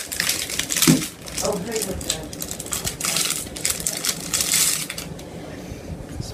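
Plastic ice-pop wrapper crinkling and crackling in irregular spurts as a Popsicle is unwrapped.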